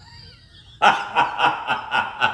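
A man laughing hard: a run of quick, repeated bursts of laughter that starts about a second in, after a near-quiet start.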